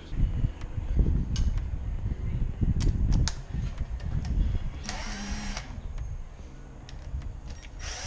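Cordless drill with a socket running bolts into the thermostat housing on a Mazda Miata cylinder head. Knocks and rumble of handling come first, then a short run of the drill's whine about five seconds in and another at the end.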